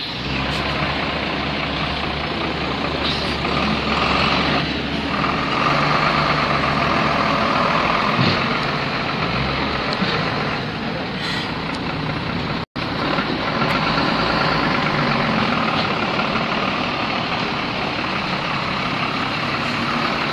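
A heavy municipal truck's engine running close by, a continuous steady rumble, while it clears the camp site; the sound drops out for an instant about two-thirds of the way through.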